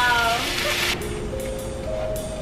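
A woman's drawn-out, wavering exclamation over a bright hiss that cuts off about a second in, followed by soft background music with held notes and a few faint clicks.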